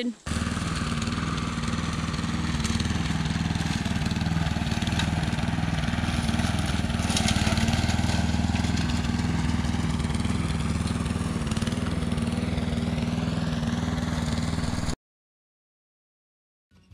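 Gasoline push lawn mower engine running steadily under load while cutting through tall, overgrown weeds. It cuts off abruptly about a second before the end.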